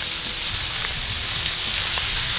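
Thinly sliced ribeye sizzling steadily on a hot cast-iron griddle, with a few faint clicks.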